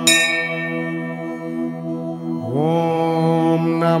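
A bell struck once, ringing out and fading over a steady low drone; about two and a half seconds in, a voice glides up into a held chant of 'Om'.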